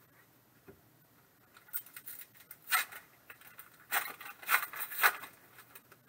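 Glossy trading cards being slid and flipped one behind another in the hands, giving a scattered run of short crisp swishes and snaps, busiest four to five seconds in.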